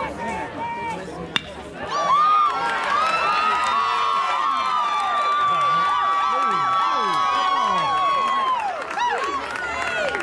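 A single sharp crack about a second and a half in, then a crowd of spectators cheering and yelling loudly, with many voices and long held shouts, dying down near the end.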